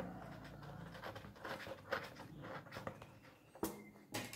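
Faint scattered clicks and rustling of small bolt hardware and the armor piece being handled as nuts are put on the elbow joint's bolts, with a slightly louder short noise just before the end.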